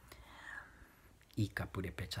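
Speech only: a man speaking, starting about a second and a half in after a short pause.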